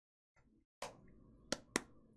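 Homemade slime squeezed and kneaded between hands: a sharp squelching pop about a second in, then two quick clicks shortly after.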